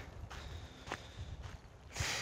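Faint footsteps of a person walking, under a low rumble, with one small click about a second in.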